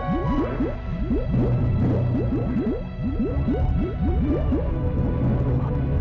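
Cartoon sound effect of bubbling lava: a quick run of rising bloops over a low rumble, with sustained musical tones underneath.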